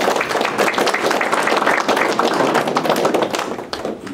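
Audience applauding, a dense patter of claps that dies away near the end.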